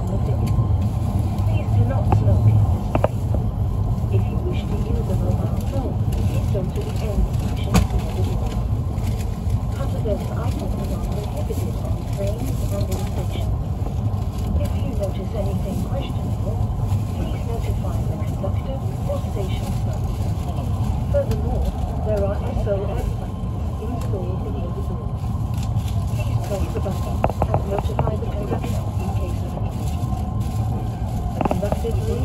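Steady low running rumble of an E5 series Shinkansen, heard inside the passenger cabin, with indistinct voices in the background.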